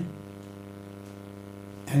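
Steady electrical mains hum, a low buzz with a stack of evenly spaced overtones, in a pause between a man's spoken phrases; his speech resumes near the end.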